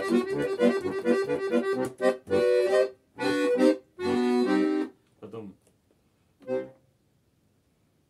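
Button accordion (bayan) playing a quick figure of notes over chords, then three held chords and a few short notes. It stops about a second before the end.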